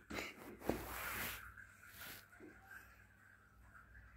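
Mostly quiet room with one faint, short thud from a small ball in play on a tiled floor, a little under a second in, followed by a moment of soft noise.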